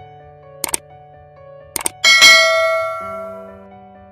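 Subscribe-button animation sound effects over soft background music: two sharp clicks, then a bright bell ding that rings out and fades over about a second.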